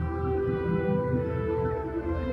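Ambient electronic music played live on iPad synthesizer apps: long held synth tones over a low, continuous bass drone.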